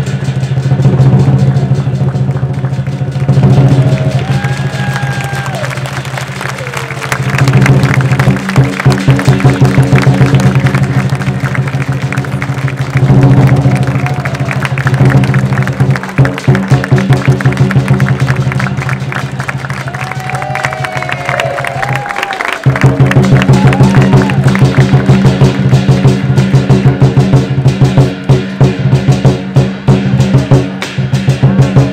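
Lion dance accompaniment: a large Chinese drum beaten in fast strikes and rolls together with clashing hand cymbals, the beat breaking off briefly about three quarters of the way through before the rapid strikes resume.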